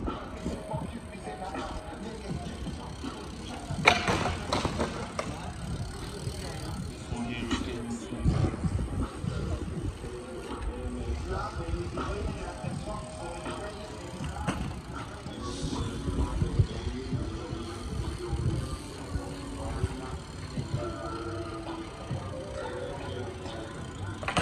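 BMX bike being ridden in flatland tricks on hard paving: tyre and frame noise with several sharp knocks as wheels or pegs hit the ground, the loudest about four seconds in. Background music and voices run underneath.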